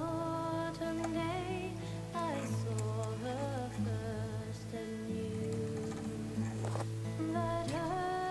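Soft background music: held tones under a slow, gently moving melody.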